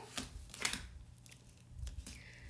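Excess adhesive vinyl being peeled off clear transfer tape and crumpled in the fingers, giving a few short crinkles and crackles, the loudest about half a second in.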